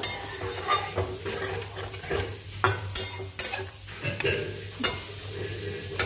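Thick chilli-garlic-curd chutney paste sizzling in oil in a steel pan while a plastic spatula stirs and scrapes through it in irregular strokes. The paste is being cooked down until the oil separates from it.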